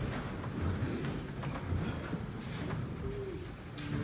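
People moving about in a church: shuffling, light knocks and a short creak about three seconds in, as the congregation stands and the offering is brought forward.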